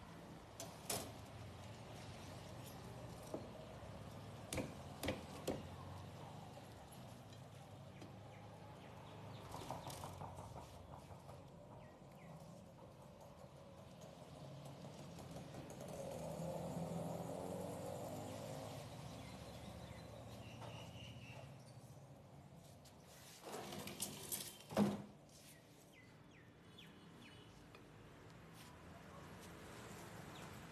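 Faint knife work filleting a large sea bass on a wooden log chopping block: scattered taps and knocks of the blade and fish against the wood, with the loudest cluster of knocks near the end. A low swell of background sound rises and fades in the middle.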